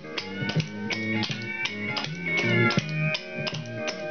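A country tune with guitar and a beat, with the quick metal clicks of clogging taps striking a wooden floor as the dancer steps in time.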